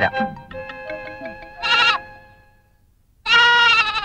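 Two goat-like bleats, a short one about two seconds in and a longer, louder one near the end, over soft background music notes that fade out midway.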